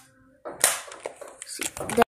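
Handling noise from a Hot Wheels die-cast toy truck being moved by hand: a short rustle about half a second in, then a quick run of small clicks near the end.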